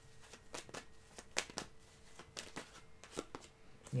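Tarot cards being shuffled by hand: a run of soft, irregular flicks and taps.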